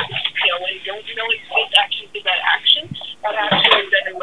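Speech: people talking, with a narrow, telephone-like sound.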